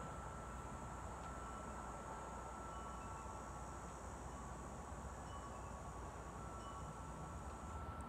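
Faint, steady outdoor forest ambience: a low hiss and rumble, with thin, high, sustained tones that come and go.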